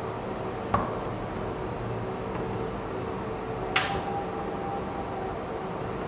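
Small metal parts of a vape kit being handled: a light click about a second in, then a sharper metallic tap near the middle that rings on for a second or so, as a small metal adapter is set down on a hard table. A steady low hum runs underneath.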